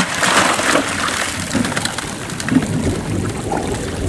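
Stream water splashing and running through a Keene A52 sluice box, with a bucket of material emptied into it near the start.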